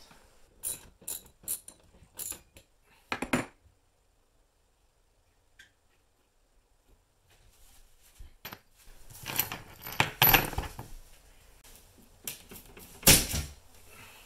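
Steel TV wall-mount bracket plates clinking and clanking as they are handled and taken down from the wall: a run of sharp metal clicks, a pause, a spell of dense clattering, then one loud clank near the end.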